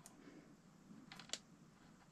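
Near silence with a few faint, sharp clicks of small wires and a little plastic connector being handled, a couple clustered about a second in.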